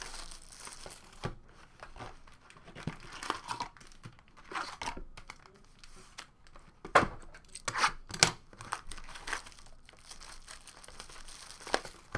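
A box of trading cards being torn open and its foil-wrapped packs handled: irregular crinkling and tearing, with a few sharper crackles about seven and eight seconds in.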